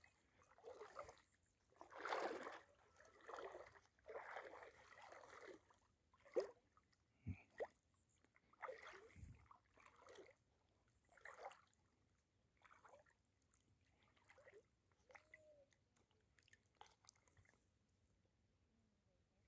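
Faint, intermittent sloshing of shallow water around someone wading, with a few sharp clicks about six to eight seconds in; the last few seconds are nearly silent.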